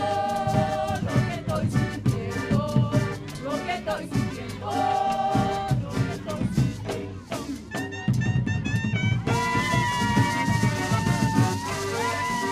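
Live cumbia band playing: a busy drum and percussion rhythm under accordion and horn melody lines. A long held melody note comes in about nine seconds in.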